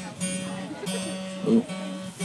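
Acoustic guitar strummed in a steady rhythm of repeated chords, with a sustained low note ringing under the strokes.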